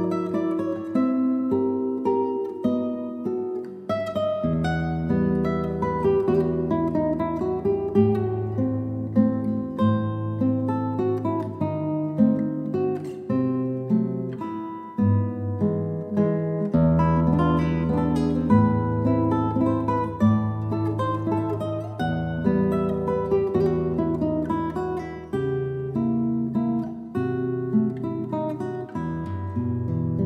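Yamaha GC32C classical guitar, with nylon strings and a solid cedar top, played solo by hand. It carries a melody of plucked notes over ringing bass notes without a break.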